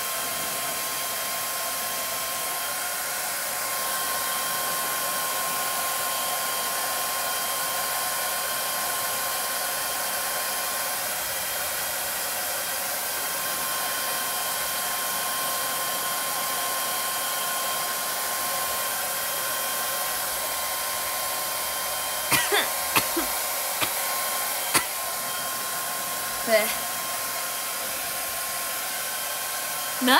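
Handheld hair dryer blowing steadily on long hair: a constant rush of air with a steady whine in it. A few brief sharp sounds break over it in the last third.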